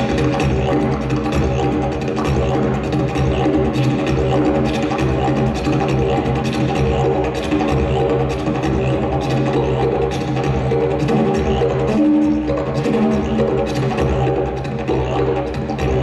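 Wooden didgeridoo played without a break: a low, steady drone with a pulsing rhythm shaped by the player's breath and mouth, and a brief higher tone about twelve seconds in.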